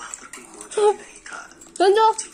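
Two short high-pitched children's voice sounds, about a second apart, over light clinks of spoons on steel bowls.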